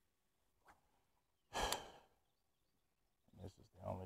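A man sighing: one loud, breathy exhale lasting about half a second, about a second and a half in.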